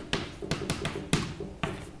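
A few light taps, about four, spaced irregularly across two seconds.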